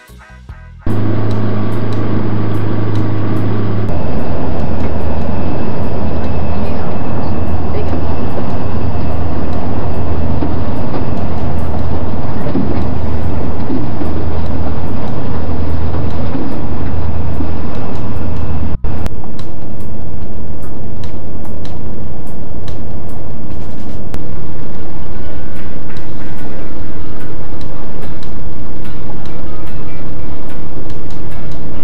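Outboard motor pushing a pontoon houseboat under way: a loud, steady drone, with a low throb pulsing a little slower than once a second for the first two-thirds.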